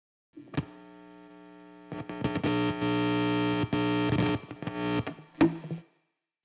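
A guitar cable's jack plugged into an electric guitar with the amp on. There is a sharp pop about half a second in, then a faint amplifier hum. From about two seconds in comes a loud distorted buzz that crackles and cuts in and out, with another pop near the end.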